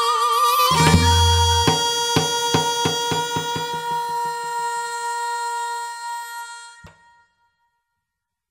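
Korean traditional dance music drawing to its close: a wind instrument holds one long note while drum strokes come faster and faster. The music fades out, with a final stroke just before seven seconds in.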